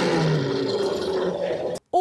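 Animated film lion's roar, a long rough roar that cuts off suddenly near the end.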